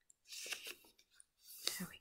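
Square of origami paper rustling and being creased by hand against a flat board, in two short bursts.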